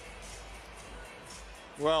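Faint background music under steady arena ambience, with a man's voice starting near the end.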